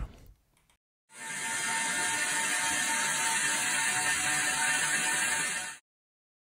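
ASUS ESC8000A-E11 eight-GPU server's cooling fans running at full load: a steady fan noise with a thin constant tone in it. It comes in about a second in and cuts off abruptly near the end.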